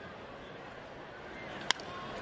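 Steady murmur of a ballpark crowd, then a single sharp crack near the end as a wooden bat hits a pitched baseball.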